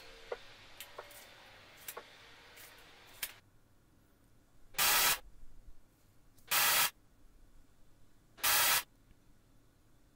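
A few light clicks and knocks as the speaker is handled. Then come three short, evenly spaced bursts of hiss-like test noise, played through the two-way speaker for an acoustic off-axis measurement.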